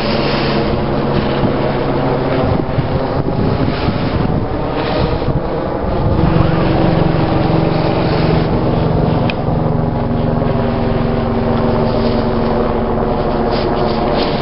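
Loud, steady engine drone with wind noise on the microphone; its pitch steps up and it gets a little louder about six seconds in.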